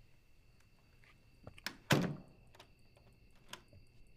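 A door being handled: a few light clicks and knocks, then one heavy thud about two seconds in, with a couple more light clicks after it. A faint steady high-pitched tone runs underneath.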